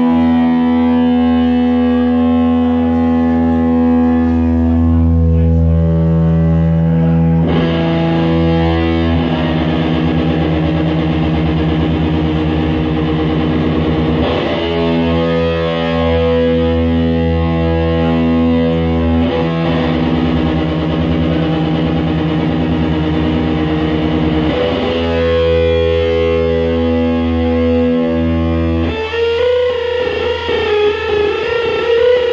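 Live rock band with distorted electric guitars, bass and drums holding long sustained chords, changing chord every five to seven seconds. Near the end a wavering lead guitar note comes in.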